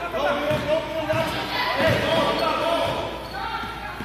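Basketball dribbled on a gym floor, several bounces under half a second to a second apart, echoing in the large hall, with shouting voices over it.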